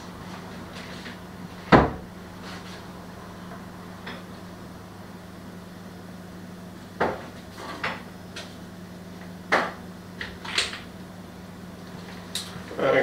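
Kitchen cupboard doors and items knocking off-camera: one sharp knock about two seconds in, then a few lighter knocks and clatters later on, over a steady low hum.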